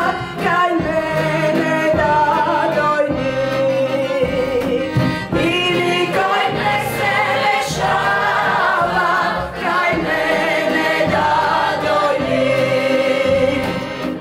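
A mixed choir of women and men singing a Macedonian folk love song, led by a woman soloist, with long held, gliding sung notes.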